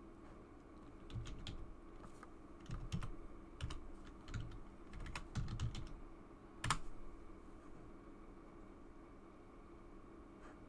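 Typing on a computer keyboard: irregular keystrokes over about six seconds, the sharpest one near the end of the run, then only a faint steady background hum.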